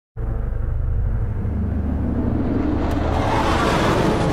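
A low, steady engine rumble that starts abruptly and grows brighter in its upper range toward the end.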